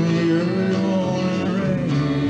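Live band performance: a male lead vocal holds a drawn-out sung line over strummed guitar accompaniment.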